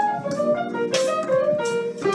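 Piano playing a quick jazz-funk solo line of single notes with the right hand, over sustained low chords and light drum hits from a backing track.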